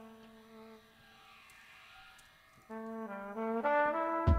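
Trumpet playing a held note that fades about a second in, then, after a soft hiss, a phrase of notes stepping upward in pitch from a little under three seconds in, growing louder near the end.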